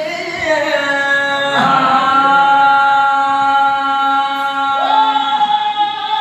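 A man singing a folk song unaccompanied, holding long drawn-out notes. His voice swoops up to a new held note about a second and a half in and again near the end.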